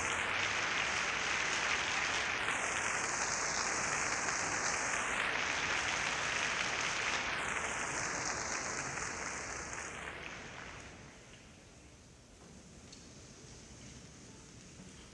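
Audience applauding steadily, then dying away about ten seconds in, leaving a quiet hall.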